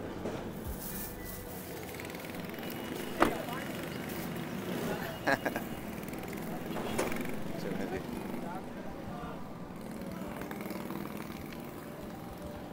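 Outdoor street background with faint voices and traffic. A few sharp knocks and clatters stand out, the loudest about three seconds in and a double one a couple of seconds later.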